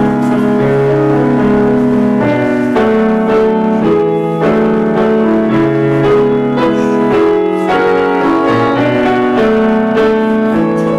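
Piano playing a steady melody over sustained chords, the notes changing about every half second to a second.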